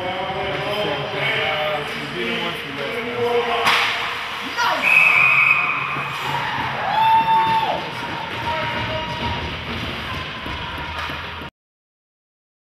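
Hockey-rink crowd voices and shouting, with a sharp crack of a stick or puck about four seconds in. A high whistle-like tone follows, then a lower held tone, with the crowd louder after the crack. The sound cuts off suddenly near the end.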